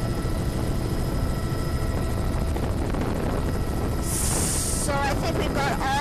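Helicopter noise: a steady, loud low rumble from the rotor and engine. A short burst of high hiss comes about four seconds in.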